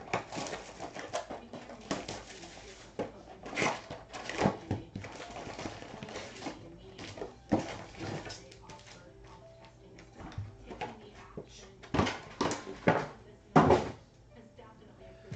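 Hands tearing the plastic shrink-wrap off a trading-card box and handling the cardboard box and the foil card packs: irregular crinkles, rustles and light knocks, the loudest knock just before the end as packs are set down.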